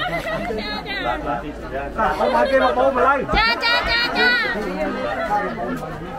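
Speech only: several people talking at once, a crowd's chatter.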